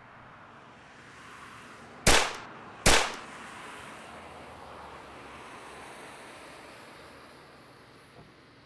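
Two sharp, loud bangs, a little under a second apart, each with a brief fading tail, over a steady hiss.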